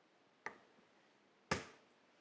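Two short, sharp clicks about a second apart, the second louder.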